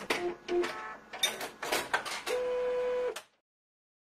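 Printer mechanism working: a run of clicks and short motor whines, then a steady whine held for about a second before everything cuts off suddenly a little after three seconds in.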